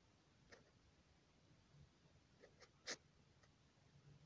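Near silence with a few faint, short scratchy rustles, the loudest about three seconds in: a baby skunk shuffling about in the grass.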